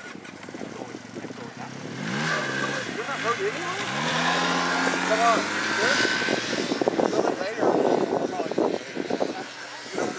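Snowmobile engine revving up about two seconds in, its pitch rising and its sound growing louder, then running steadily, with people talking over it.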